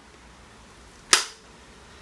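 A single sharp click about a second in as the Fluke 376 FC clamp meter and its magnetic hanger are handled, fading quickly.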